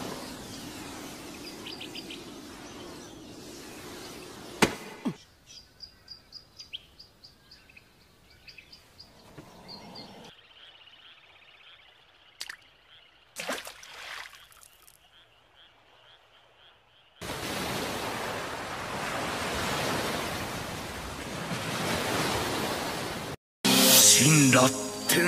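Anime sound effects with no music. A steady hiss comes first, then a single sharp hit about four and a half seconds in. After that come faint clicks and chirps, a soft steady tone and a whoosh, and from about seventeen seconds a long, loud, even hiss that cuts off just before the end.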